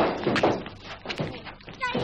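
Voices in rough-and-tumble play with a small child: sharp loud bursts about half a second apart at the start, then a short high rising cry near the end. A thump or two sounds among them.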